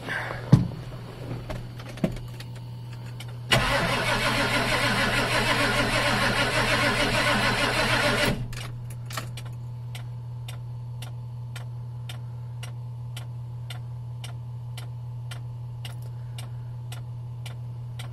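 Ford diesel pickup's starter cranking the engine for about five seconds, then stopping without the engine catching: a start attempt on the newly fitted straight electric fuel pump. Afterwards a steady ticking about three times a second over a low hum.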